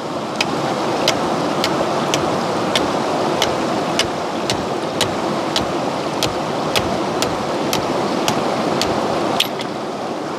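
Steady rush of river water over rocks, with a machete blade cutting into a green stick in light, regular strokes about twice a second.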